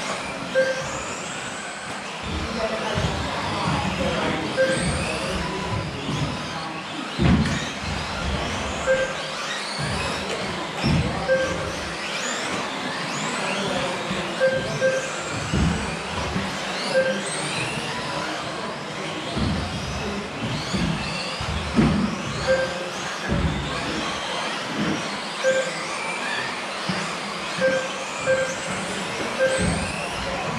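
Several 1/10-scale electric off-road buggies racing, their motors whining in overlapping pitches that rise and fall as they accelerate and brake. Short electronic beeps from the lap-counting system sound every second or two, with occasional low thumps.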